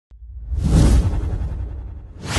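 Intro whoosh sound effect with a deep rumble under it, swelling about half a second in and then fading away slowly.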